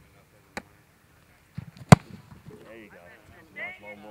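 A football being punted: one sharp, loud thwack of the foot striking the ball about two seconds in, with a fainter click about a second and a half before it.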